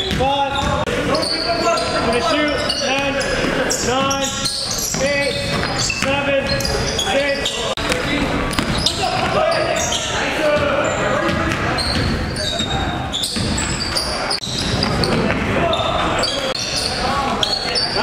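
Live basketball game sound in a gymnasium: a ball dribbling and bouncing on the court floor among players' indistinct shouts and calls.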